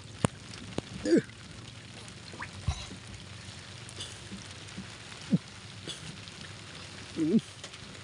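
Rain falling on the sea and on the boat: a steady hiss with scattered sharp taps. Two short pitched sounds break through, about a second in and again near the end.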